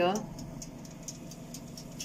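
Oven running with a steady low hum while a cake bakes inside, with a few faint ticks.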